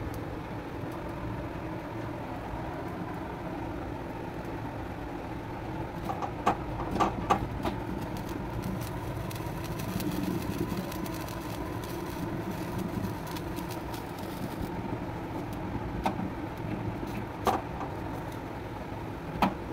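Gas stove burner flame running steadily under an eggplant roasting on a wire grill, with a few short sharp clicks midway and again near the end.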